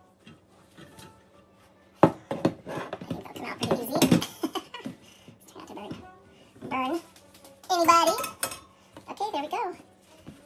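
A sharp clatter about two seconds in, then knocking and rattling as a ceramic baking dish and a metal wire cooling rack are flipped over together to turn out baked bread rolls. A high voice chatters in the last few seconds.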